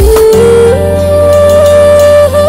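Film background music: a drum beat stops just after the start, leaving a held melody line that steps up in pitch over a steady bass.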